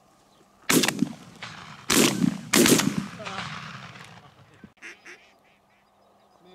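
Three shotgun shots, the second and third close together, each with a long echoing tail. About two seconds after the last shot come two short quacks.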